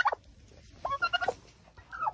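Domestic turkeys giving a few short calls about a second in.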